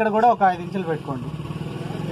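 A small engine running with a fast, even buzz, taking over about a second in as a man's speech stops.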